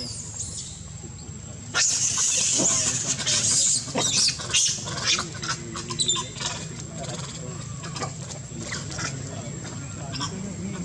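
Monkeys giving shrill, high-pitched calls, loudest in a dense burst from about two to five seconds in, then thinner calls.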